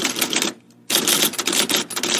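Typewriter keys clacking in rapid runs: one run fades out about half a second in, and a second begins about a second in.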